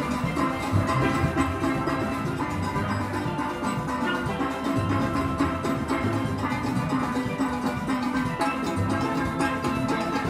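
A steelband of many steel pans of different sizes, struck with sticks, playing a tune together in a steady rhythm.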